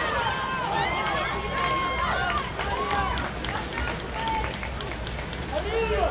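Several voices shouting and calling out over one another around a water polo game, with no clear words, over a steady low background rumble.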